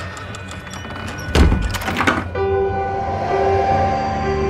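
A heavy thud about a second and a half in, with a second one just after, followed by music of long held tones over a pulsing lower note.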